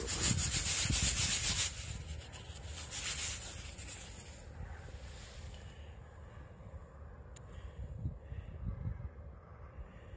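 A freshly dug coin rubbed briskly against a trouser leg to clean off soil: a scratchy rubbing that lasts about a second and a half, then a shorter spell about three seconds in, with quieter handling afterwards.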